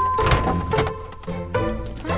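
Cartoon sound effect of an elevator arriving and its doors opening: a sharp thunk at the start with a single held tone that fades after about a second and a half, over light background music.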